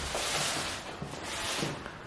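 Rustling and handling noise, strongest in the first second and fading after.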